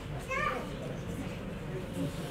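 Indistinct voices in a hall: a brief bit of speech about half a second in, then low background murmur of people talking.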